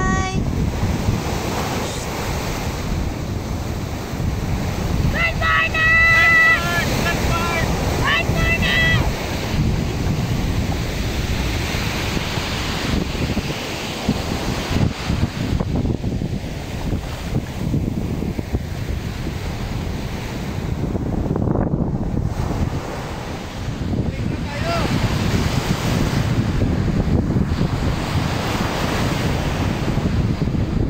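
Surf washing onto a sandy beach, with wind buffeting the microphone throughout. A short high-pitched sound comes twice a few seconds in.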